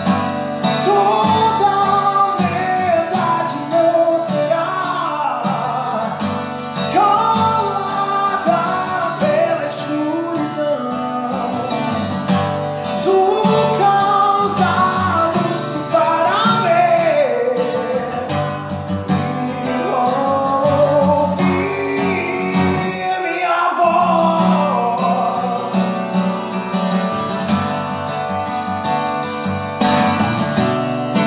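A man sings with a strummed steel-string acoustic guitar. The singing drops out in the last few seconds, leaving the guitar alone.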